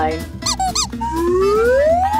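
Cartoon-style sound effects over background music: two short squeaks, then a long whistle tone that rises steadily in pitch.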